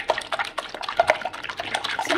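Wire whisk with silicone-coated wires beating eggs by hand in a bowl: a quick, irregular run of wet clicking and sloshing strokes, several a second.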